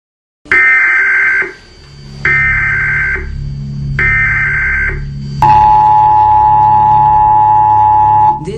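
Emergency Alert System tones: three short bursts of high, warbling data tone, then a loud, steady two-tone attention signal from about five and a half seconds in. A low steady drone runs underneath. This is the alert signal that comes before an emergency broadcast announcement.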